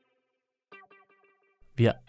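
A short, soft plucked guitar-like chord with effects, entering about three quarters of a second in and dying away: music for an animation. A man's voice begins just before the end.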